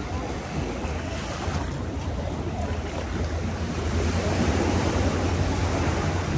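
Small waves breaking and washing up the sand at the water's edge, with wind rumbling on the microphone. The surf swells a little about four seconds in.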